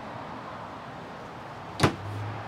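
A wooden pantry cabinet door in the RV shutting with a single sharp clack near the end, over steady background noise.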